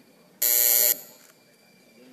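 Electric buzzer in a legislative chamber sounding once for about half a second, then cutting off. It marks the call that opens a roll-call vote.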